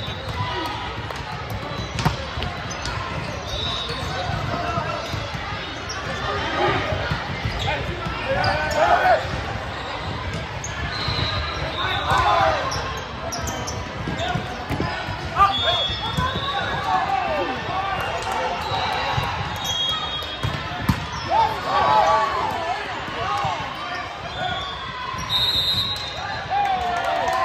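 The echoing din of a volleyball game in a big sports hall: voices talking and shouting, sharp smacks of the ball being hit, and short high squeaks of sneakers on the hardwood court.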